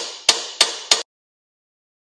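Four sharp knocks about a third of a second apart, each ringing off briefly over a hiss; the sound cuts off abruptly about a second in.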